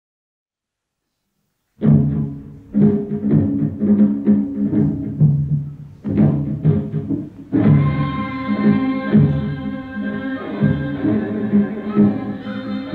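Silence for nearly two seconds, then Korean traditional accompaniment for salpuri dance begins: a series of drum strokes over low steady tones. About seven and a half seconds in, several more sustained melodic instruments join and the music fills out.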